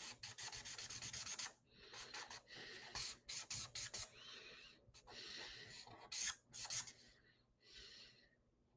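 A drawing tool scribbling back and forth on paper close to the microphone, shading in dark tones. A fast, even run of strokes in the first second and a half, then shorter bursts of scribbling with brief pauses.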